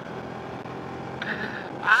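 Steady wind and riding noise from a Yamaha LC135 motorcycle moving along a road, with no gear change or rev standing out.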